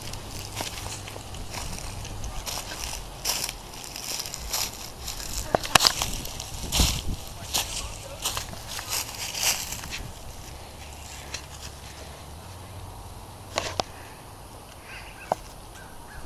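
Footsteps crunching through dry fallen leaves, irregular steps for about the first ten seconds, then only a few separate crunches near the end.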